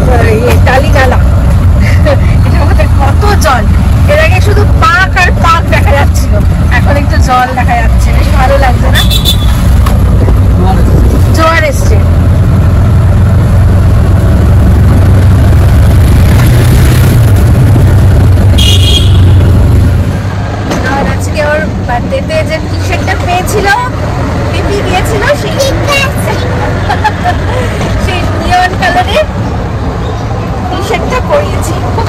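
Auto-rickshaw engine running with a steady low drone, heard from inside the open cabin while riding. About twenty seconds in, the drone drops away and the sound gets quieter.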